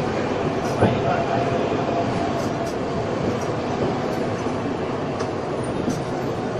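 Steady running noise of a Dotto tourist road train heard from inside its open passenger carriage: a continuous rumble of the drive and tyres on the street, with a brief sharp knock about a second in.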